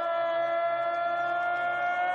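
A ring announcer's voice holding one long drawn-out note, the stretched-out syllable of a player's name called in a walk-on introduction. The pitch creeps slightly upward.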